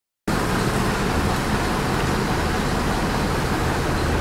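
Steady rumble and hiss of road traffic on a rain-soaked street, heard from inside a moving vehicle as another vehicle passes close alongside. It starts abruptly just after the beginning.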